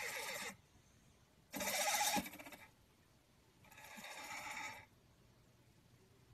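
A cat making three vocal sounds, each about a second long and about two seconds apart, the second one the loudest.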